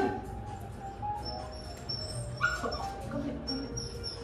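A Pomeranian whining, a few thin high-pitched whines, over background music.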